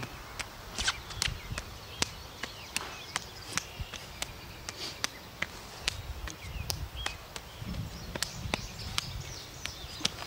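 Faint, irregular clicks and taps of movement during a close-range knife-fighting drill: hands and forearms meeting in parries and checks, and feet shifting on grass. There is a low rumble near the middle.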